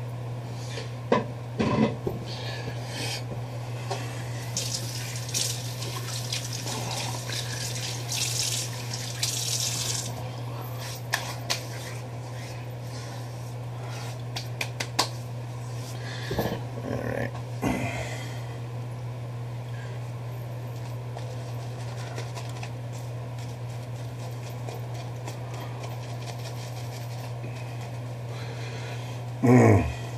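Water running from a tap for several seconds, with scattered small handling clicks and knocks, over a steady low hum.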